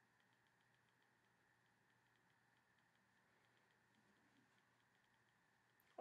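Near silence: room tone with a very faint, even ticking.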